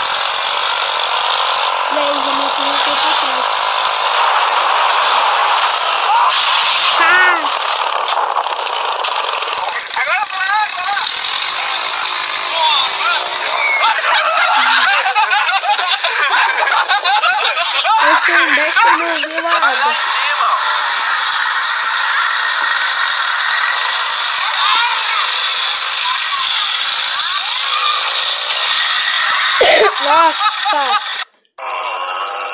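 Indistinct voices calling out over a constant loud rushing noise, in a harsh, low-quality recording.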